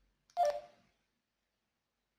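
Retevis RT5 handheld radio giving one short keypad beep with a click as a button is pressed while stepping through its CTCSS tone settings.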